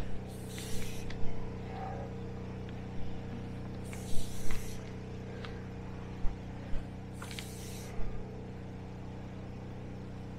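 Polyethylene well downpipe being fed by hand down a well casing: three short scraping swishes a few seconds apart as each length is pulled over the casing rim, with a few light clicks. A steady low mechanical hum runs underneath.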